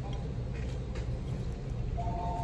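Low, steady background hum with a few faint, soft taps and rustles as food is handled over the bowl.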